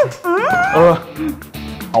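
Background drama music under short spoken exclamations whose pitch slides up and down.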